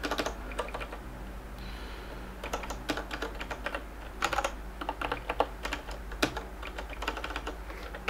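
Computer keyboard being typed on: scattered key presses in short irregular runs with pauses between them.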